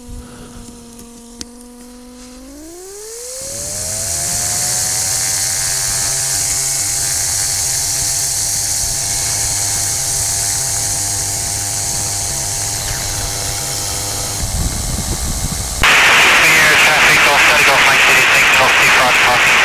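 Flexwing microlight's engine and propeller opened up to takeoff power: the engine note climbs steeply about three seconds in, then holds steady and loud during the takeoff roll. Near the end the sound cuts abruptly to loud wind rush in flight.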